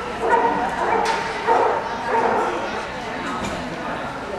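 A dog barking several times in quick succession, amid voices.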